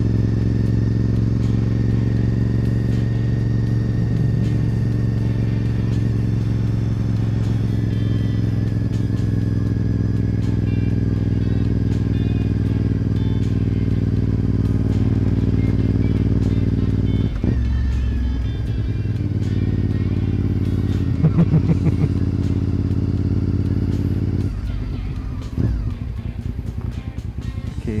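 Honda RC51's 1000 cc V-twin engine running at a steady cruising speed. Its note changes about two-thirds of the way through, then drops lower and quieter near the end as the bike slows to a stop.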